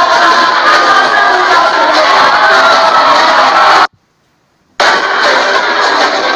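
Loud live music with singing over a large crowd, recorded on a phone. The sound cuts out completely for about a second past the middle, then comes back just as loud.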